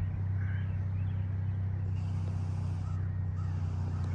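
Steady low motor hum, with a few faint bird calls over it.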